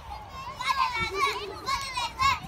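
Young children's high-pitched voices chattering and calling out, several at once.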